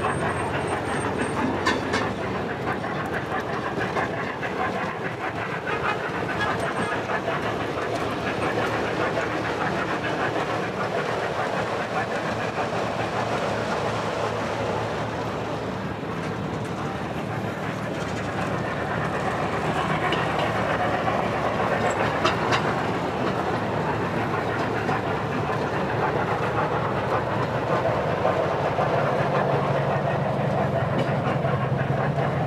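Model steam locomotive running along a layout's track, its wheels clattering steadily over the rails, with people's voices in the background.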